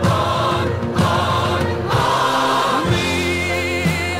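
A recorded song with singing voices and held, wavering sung notes, played over the pictures.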